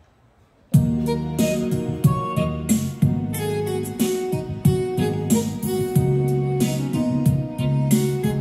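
Yamaha PSR-I455 portable keyboard playing an instrumental melody over a drum beat. The music starts suddenly just under a second in.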